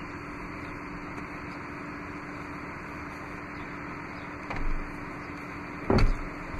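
Steady hum and hiss, with a soft thud about four and a half seconds in and a short sharp knock near the end as the removable centre seat section is set onto its floor latch hooks.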